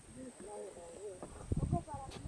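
Faint, indistinct voices with pitch that rises and falls. Low thuds come in during the second half.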